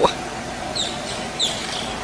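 Steady outdoor street background noise, with two short, high, falling chirps a little under a second in and again about half a second later.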